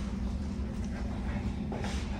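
Steady low room hum with no distinct event on top of it.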